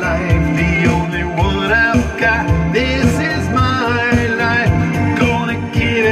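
A man singing into a handheld microphone over backing music with a steady beat.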